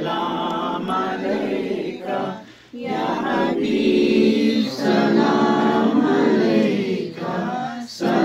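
Unaccompanied voices singing an Urdu devotional salam to the Prophet in a chant-like melody. The phrases are held long, with a brief break about two and a half seconds in.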